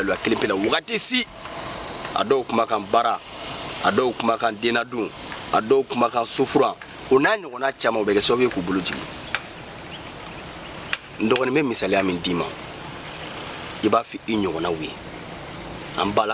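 Insects, likely crickets, chirring in a steady high-pitched band the whole time, under a man's voice talking in stretches.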